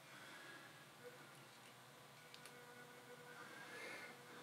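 Near silence, with a faint steady whine from the model locomotive's small electric motor as it creeps slowly along the track.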